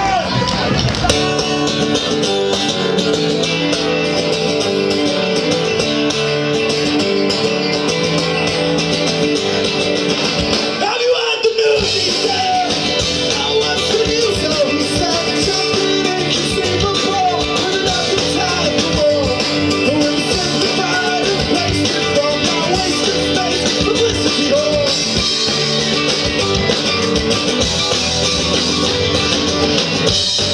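Live indie rock band playing an amplified song, with acoustic guitar, electric bass and electric guitar, through stage PA. The low end drops out briefly about eleven seconds in, then the full band comes back in.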